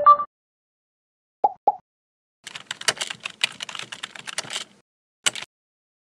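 Sound effects of an animated logo outro: a short tone at the start, two quick pitched pops about a second and a half in, then about two seconds of rapid, irregular clicking like keyboard typing, and one last short burst of clicks near the end.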